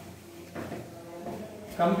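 Chalk tapping and scraping on a blackboard as a word is written, with a few short strokes. A man starts speaking near the end.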